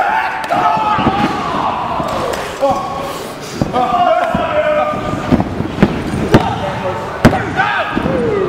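Sharp slaps and thuds of wrestlers hitting the ring canvas and each other, with several loud cracks in the second half, over spectators shouting.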